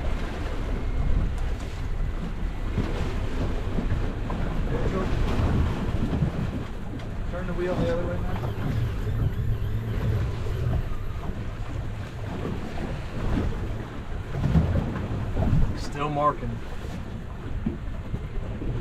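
Wind on the microphone and waves washing against the hull of an offshore fishing boat, with a steady low rumble beneath. Brief snatches of a voice come about halfway through and again near the end.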